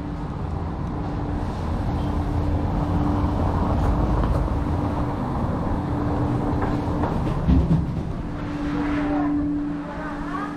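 A car moving slowly along a cobblestone lane, its engine hum and tyre rumble swelling over the first few seconds. There is a brief loud thud about seven and a half seconds in.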